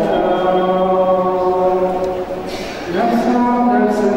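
A Coptic Catholic bishop chanting the liturgy into a microphone in long held notes. The chant pauses briefly after about two seconds, and a new note begins about three seconds in.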